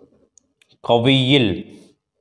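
Faint scratching of a pen writing on paper, then about a second in a man's voice sounds one loud drawn-out syllable lasting under a second.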